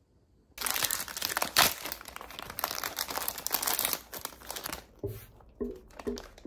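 A crinkly plastic wrapper being handled and torn open by hand, in dense crackling bursts that start suddenly and thin out near the end.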